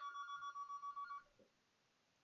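A faint electronic ringing tone: two steady pitches trilling rapidly, several pulses a second, for just over a second, then stopping.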